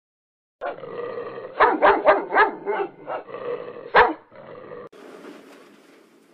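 A dog growling and barking: a quick run of four barks about one and a half seconds in, then one loud bark at four seconds. It cuts off abruptly near five seconds, leaving faint hiss.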